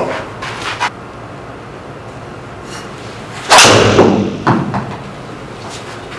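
Titanium driver head striking a golf ball: one sharp crack about three and a half seconds in that rings briefly, then a softer knock about a second later. The golfer calls it not the cleanest of strikes.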